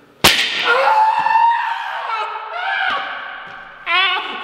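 A stretched rubber resistance band released so it snaps against a man's bare back with one sharp crack, followed at once by his long, wavering cry of pain.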